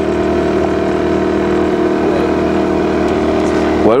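Small outboard motor running at a steady speed, pushing a boat along; its pitch holds even throughout.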